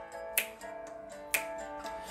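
Two finger snaps about a second apart, keeping time over quiet sustained backing music between sung lines.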